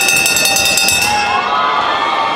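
Boxing ring bell ringing rapidly for about a second, signalling the end of the round, over a cheering, shouting crowd.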